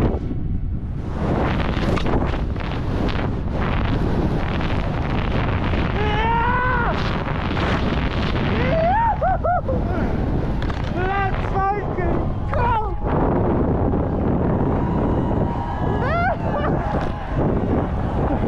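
Wind rushing over a helmet camera's microphone during a fast ski descent, a steady loud noise throughout, with a voice whooping several times.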